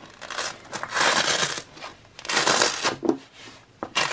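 Hook-and-loop fastener being peeled apart on a felt pouch, two long rasping rips, the first about a second long and the second shorter, as a patch or its clear card pocket is pulled off.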